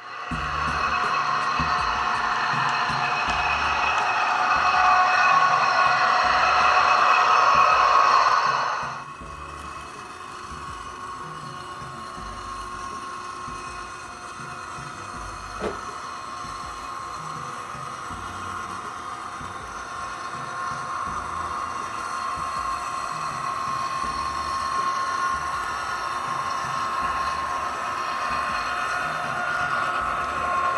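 A louder sound of several held tones for about the first nine seconds, cutting off abruptly. Then an HO-scale model freight train hauled by diesel locomotives runs past on a layout: a steady hum with a held tone that grows gradually louder toward the end, and a single click about halfway through.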